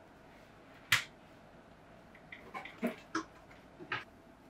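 Metal tweezers clicking and tapping against a paper board as flower petals are laid out one by one: one sharp click about a second in, then a quick run of lighter taps near the end.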